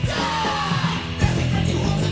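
Hardcore punk band playing: distorted electric guitar, bass and drums with a yelled vocal.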